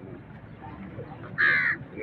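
A crow cawing once, a single short call about a second and a half in, over a faint outdoor background.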